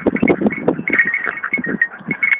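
Terriers growling as they tug at a badger, with a thin, high whine from about halfway through.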